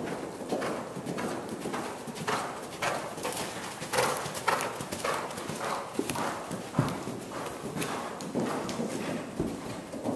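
Hoofbeats of a Thoroughbred gelding cantering on arena footing: a steady run of dull thuds, a few each second.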